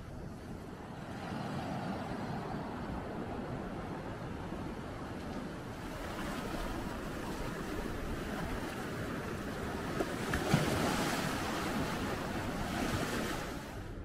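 Sea surf washing in over and around rocks on a beach, a steady rush of water that grows louder about ten seconds in. A single brief click comes just as it swells.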